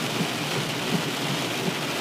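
Heavy rain on a car, heard from inside the cabin: a steady hiss with faint small ticks.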